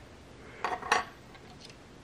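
A few light metallic clicks and clinks as a GFCI outlet's metal grounding strap and small plastic parts are handled against the open plastic housing, the strongest near one second in.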